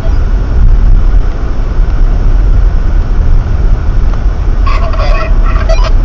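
Steady road and engine rumble inside a car driving at about 40 km/h on a snow-covered road, picked up by the dashcam's microphone. Near the end a brief buzzing tone lasts about a second.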